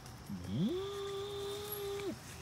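A person's voice sliding up into one long held note, like a drawn-out "ooh", steady for about a second and a half and dropping off at the end.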